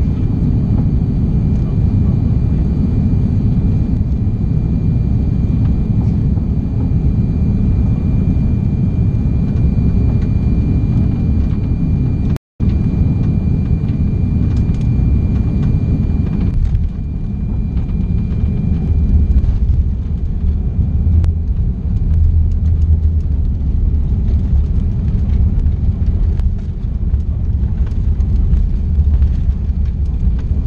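Cabin noise inside an Airbus A340-600 landing: a loud, steady rumble of engines and airflow. The sound cuts out for a moment just before halfway. A little past the middle the rumble changes as the airliner settles onto the runway, and a heavier low rumble of the landing roll follows, with the wing spoilers raised.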